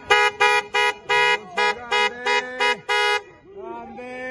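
A horn honked about ten times in quick, uneven blasts, each on the same steady pitch, with voices shouting underneath and talking near the end.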